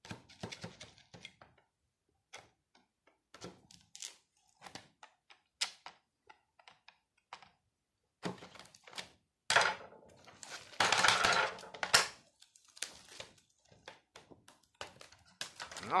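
A Mora knife cutting the cellophane shrink-wrap on a cassette box set: scattered clicks and taps of the blade and fingers on the plastic cases, then a run of louder crackling and tearing of the wrap from about ten seconds in.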